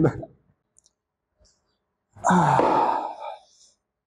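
A man's long, breathy sigh about two seconds in, starting with a short voiced sound that falls in pitch and trailing off after about a second and a half.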